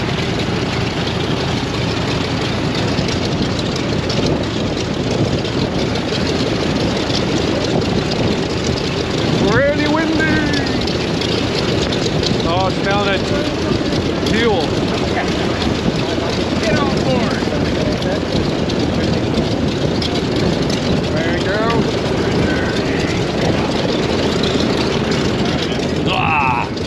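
Douglas C-47's Pratt & Whitney R-1830 radial piston engine idling on the ground with a steady propeller drone. Voices call out faintly over it a few times.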